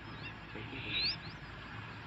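A small bird calling with short, quickly rising whistled chirps, the loudest about a second in, over a steady low outdoor background.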